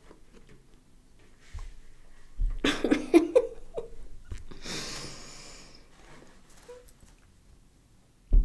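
A woman's pained vocal outburst about two and a half seconds in, then a long hissing breath, her reaction to the burning sting of raw garlic she is eating.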